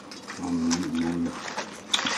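A short, low murmured voice sound in two brief pieces, with paper towel crinkling as it is handled.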